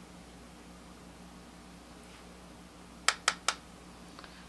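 Faint steady room hum, then three quick, sharp taps about three seconds in, close together within half a second.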